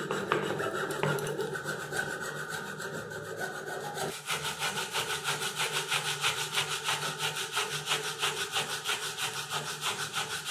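A hand saw cuts through a bundle of wooden skewers flush with a pine board for about the first four seconds. Then sandpaper is rubbed by hand back and forth over the sawn spot in quick, even strokes, about five a second.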